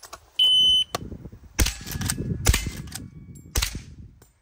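A shot timer's start beep, one steady high tone lasting about half a second, then a Henry H001 .22 rimfire lever-action rifle fires three shots about a second apart, the lever being worked between them.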